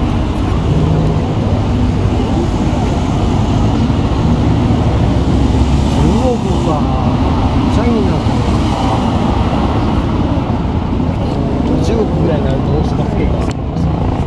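Motorcade vehicles driving past: a steady run of engine and tyre noise, with people talking in the background now and then.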